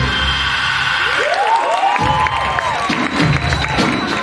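Arabic dance music whose bass drops out for about a second, while an audience cheers and whoops in overlapping rising-and-falling calls; the music then comes back in.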